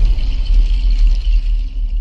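Loud, steady deep bass rumble with a thin hiss above it: the sound design of an animated intro sting.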